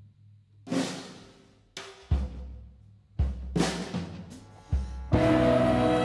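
A drum kit plays sparse, separate strokes in a slow, open jazz passage, about seven in five seconds. Each is a low drum thud with a cymbal wash that rings and fades. About five seconds in, the band comes in with a held, ringing chord of steady pitched tones over the drums.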